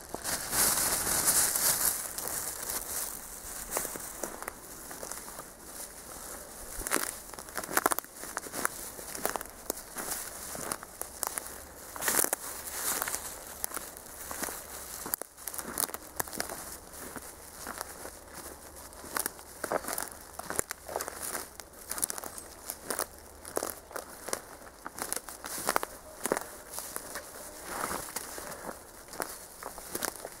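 Footsteps through dry grass and forest-floor leaf litter: an uneven run of crunching, crackling steps, with louder rustling in the first couple of seconds.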